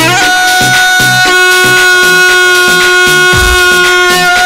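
Live Arabic dabke dance music from a wedding band's keyboard: a long held melody note, joined about a second in by a lower sustained drone note, over a steady drum beat.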